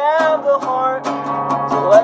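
Acoustic guitar strummed in a steady rhythm while a young man sings over it, his voice gliding upward near the end.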